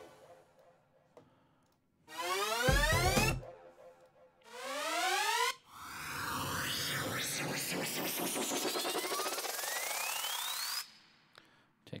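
Synthesized riser sound-effect samples from a 'Surge FX Sweep Buildup' library auditioned one after another: a short upward sweep with a low thud about two seconds in, a second short rising sweep, then a longer rising noise sweep with a climbing tone that cuts off suddenly near the end.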